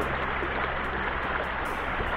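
Shallow rocky creek riffle rushing steadily, with low sustained background music notes underneath.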